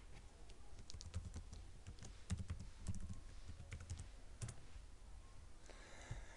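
Faint, irregular clicking of computer keyboard keys, with a few soft low thumps.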